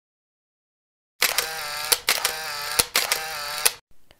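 An edited-in electronic sound effect: three short wavering, buzzy tones in a row, each starting with a sharp click, after about a second of silence.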